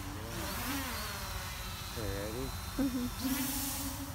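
A person's voice making wordless, drawn-out sounds, ending in one long held note, over a steady low rumble. A faint thin high whine from the small hovering quadcopter drone runs through the middle.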